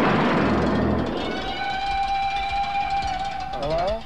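A shotgun blast: a loud noisy rush with a low rumble, fading over the first couple of seconds, over held music chords. A voice comes in near the end.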